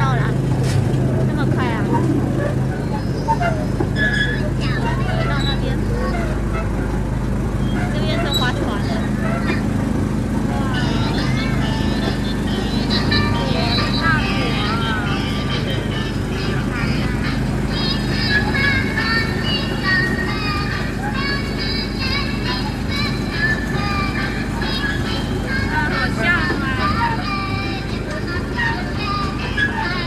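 A small sightseeing train's engine humming steadily as it runs, with voices and music over it.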